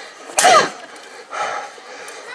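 A person's short, loud exclamation about half a second in, then a softer breathy sound.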